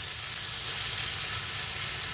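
Long beans and chopped tomatoes sizzling steadily in hot oil in a frying pan over a high flame, being stirred with a spatula.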